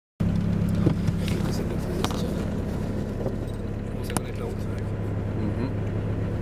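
Jeep Cherokee XJ's 2.1-litre four-cylinder turbodiesel running at a steady engine speed, heard from inside the cabin, with a few sharp knocks about one, two and four seconds in.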